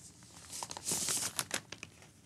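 Clear plastic outer sleeve of a vinyl LP crinkling as the record is pulled out of it: an irregular run of rustles and light crackles starting about half a second in and stopping just before the end.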